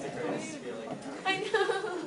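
Indistinct voices of several people talking at once, a woman's voice among them.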